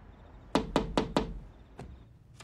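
Knuckles knocking on a window: four quick, even knocks about half a second in, then a single fainter knock near the end.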